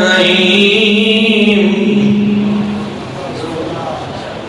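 A man's voice chanting one long held note of religious recitation at a steady pitch, fading out about three seconds in and leaving a steady background hiss.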